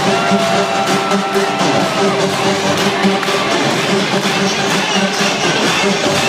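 Electronic house music from a DJ set, played loud through a concert sound system with a steady pulsing beat, and a crowd cheering over it.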